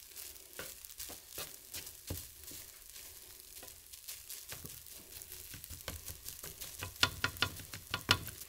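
Spatula scraping and tapping against a frying pan as fried rice is stirred, over a faint sizzle. There is a quick run of louder scrapes about seven seconds in.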